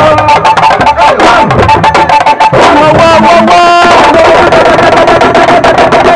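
Loud drum-driven music: rapid, dense drum strokes with a long held melody line above, which bends in pitch a little after the midpoint.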